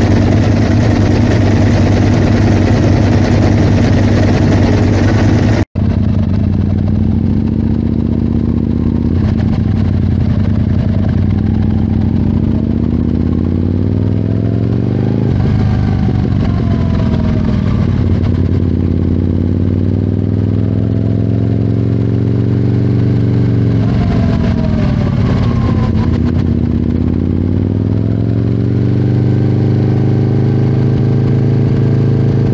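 Aprilia sport motorcycle engine idling steadily, then, after a sudden brief dropout about six seconds in, running at low speed as the bike moves off. Its pitch rises and falls twice with the throttle and rises again near the end.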